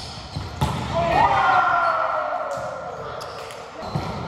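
Volleyball being played on a hardwood gym court: two sharp ball hits about half a second and a second in, echoing in the hall, then a player's long drawn-out call sliding down in pitch for about two and a half seconds.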